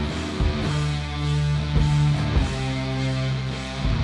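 Live rock band playing an instrumental passage: electric guitars hold loud sustained chords that change every second or so, over drums with heavy hits and washing cymbals.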